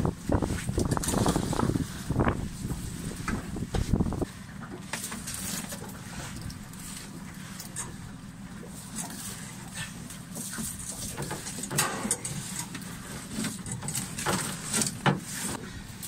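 Outdoor noise aboard a small open boat on choppy water: rough wind-and-water noise, loud for the first four seconds, then a steadier low background with scattered small knocks as a fishing net is handled over the gunwale.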